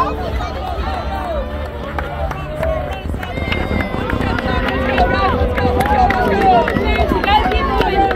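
Crowd hubbub of children and adults on a ballfield: overlapping chatter and calls, with high children's voices growing louder and busier from about three seconds in.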